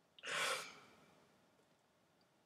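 A single breathy sigh, about a second long, fading out.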